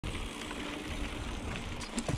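Mountain bike rolling along a dirt singletrack, heard from a GoPro on the rider: steady tyre and drivetrain noise with an uneven wind rumble on the microphone, and a few clicks and rattles near the end.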